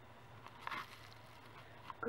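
Quiet room tone with a faint steady low hum, a brief soft rustle about two-thirds of a second in and a small click near the end.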